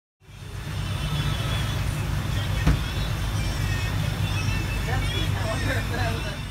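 Tour boat's engine running steadily, a loud low hum, with faint passenger voices near the end and a single knock about two and a half seconds in.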